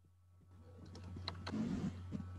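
A steady low hum comes in, and faint background noise with a few small clicks grows louder from about half a second in: a video-call participant's open microphone.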